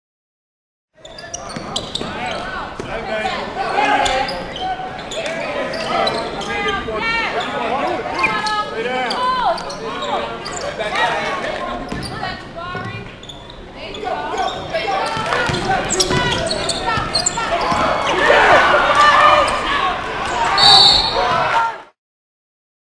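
Basketball dribbling and bouncing on a hardwood gym floor among players' and spectators' voices, all echoing in the hall. The sound comes in after about a second of silence and cuts off just before the end.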